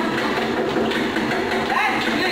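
Motorized treadmill running with someone jogging on it, under background music with a singing voice.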